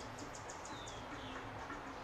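Faint birdsong: short high chirps and small falling whistles repeat about every half second over a low steady room hum.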